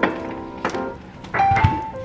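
Background music: a light melody of struck, bell-like keyboard notes stepping between pitches, with a soft low thud about a second and a half in.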